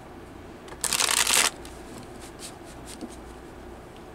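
A deck of tarot cards riffle-shuffled by hand: a single quick burst of cards flicking together about a second in, lasting half a second, followed by a few light taps as the deck is squared.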